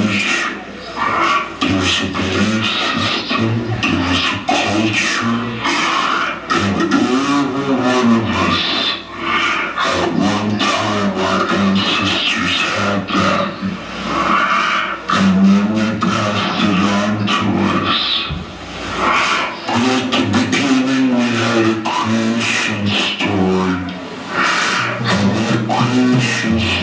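Live band performing: a singer over electric guitar, bass and drums, loud and continuous.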